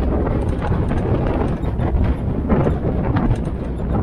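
Military-style Jeep driving along a rough forest track: a steady low engine and road rumble, with irregular knocks and rattles from the body and wheels.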